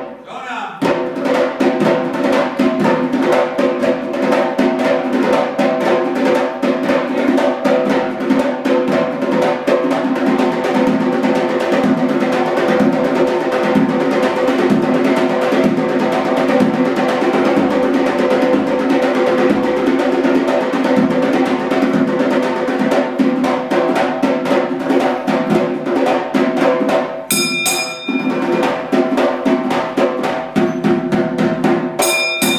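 A zurkhaneh morshed beating a zarb goblet drum in a fast, steady rhythm and chanting poetry over it in long held notes. A bell rings briefly near the end.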